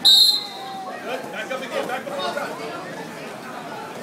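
A single short, loud whistle blast at the very start, the kind a wrestling referee blows, followed by spectators' voices and chatter in a large hall.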